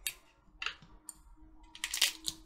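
A few light clicks and taps of small metal vape-tank parts being handled as the tank is opened: one just after the start, one about two-thirds of a second in, and the loudest near the end.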